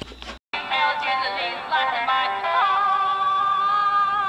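Music with a sung melody that comes in after a brief dropout and settles into one long held note.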